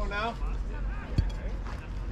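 People calling out across a baseball field, a voice rising and falling in the first moment, with one sharp knock about a second in.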